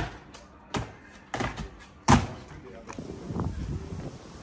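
A series of sharp thuds as a parkour jumper's feet land on concrete: one at the start, one just before a second in, a pair about one and a half seconds in, and the loudest about two seconds in. A brief voice follows near the end.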